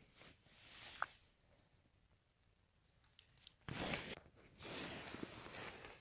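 Crunching and scraping on snow-covered ice, in two bursts: a short one a little before four seconds in and a longer one starting just before five seconds in. A single faint click comes about a second in.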